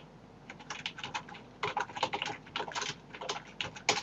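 Typing on a computer keyboard: irregular keystrokes, sparse at first and coming quicker from about one and a half seconds in.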